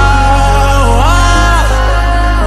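Pop music: a held melody line that glides up and down over a steady deep bass, without drum hits.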